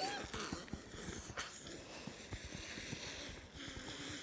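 Faint handling noise of plush toys being bumped and rubbed together: soft dull thumps and a few brief fabric swishes.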